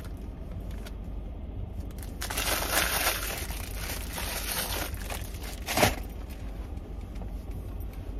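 Paper takeout bag crinkling and rustling as a breadstick is handled, densest a couple of seconds in, with one short sharp crackle about six seconds in.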